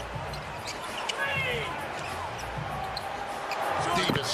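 Basketball dribbled on a hardwood court, with a few short sneaker squeaks about a second in and voices calling out on the court.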